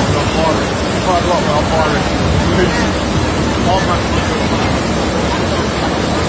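Steady rush of water running through a log flume ride, with a low fluctuating rumble and distant voices of people over it.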